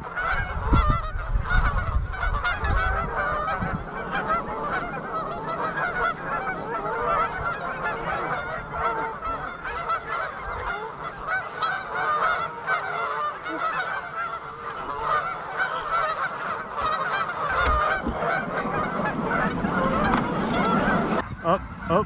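A large flock of Canada geese honking, many calls overlapping into a continuous din.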